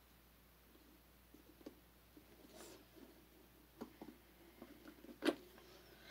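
Faint scattered clicks and handling noises from a battery-operated flame lantern being checked over because it won't light; it has no batteries in it. The loudest click comes about five seconds in.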